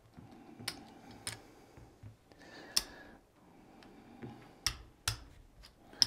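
Casino chips clicking as they are set down and stacked on a craps table layout while place bets go up across the numbers. It is a handful of sharp, separate clicks spread over several seconds, the loudest near the middle.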